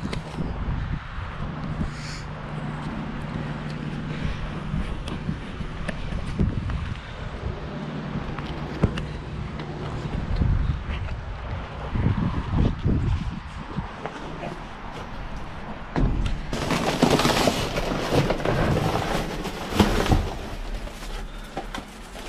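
Plastic bags, bubble wrap and packaged snacks crinkling and rustling as hands dig through a dumpster, a loud dense crackle in the last quarter. Before it, scattered handling knocks over a low steady hum.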